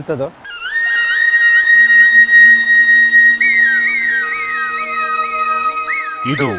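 Background music: a flute melody holds a long note, then plays a run of quick repeated turns, over a low sustained drone.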